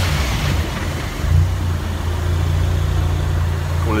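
A car engine running steadily at low revs, a low hum that grows a little stronger about a second in.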